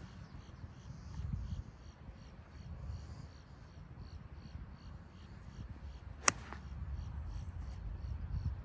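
A gap wedge striking a golf ball off the tee: a single sharp click about six seconds in, over a low background rumble.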